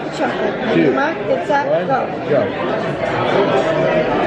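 Many voices talking over one another: the steady chatter of diners filling a restaurant dining room.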